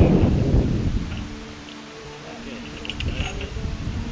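Wind buffeting the microphone, a loud low rumble that dies down about a second in, leaving faint background music with held notes.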